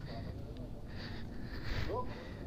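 Faint voices over quiet background.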